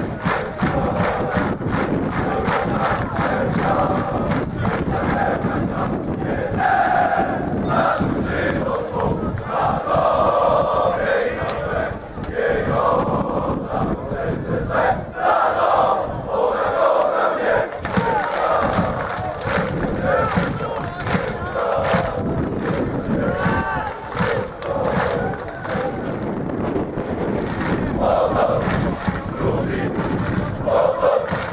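Large crowd of football supporters chanting together in unison, many voices at once.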